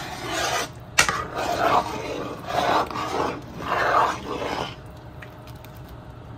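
Metal spoon stirring thick sweet pongal in a pot, about four rasping scrapes against the pan, with a sharp knock of spoon on pot about a second in.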